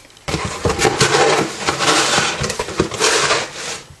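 Cardboard and paper rustling and scraping as a shipping box and its cardboard divider insert are handled, with scattered light knocks.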